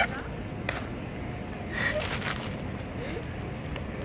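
Steady outdoor background noise, with a short burst of a person's voice right at the start, a faint click just under a second in, and another brief burst of voice about two seconds in.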